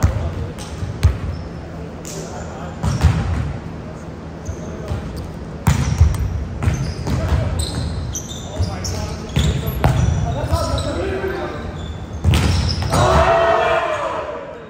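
Volleyball rally: a string of sharp ball hits, each echoing, with players calling out, loudest near the end.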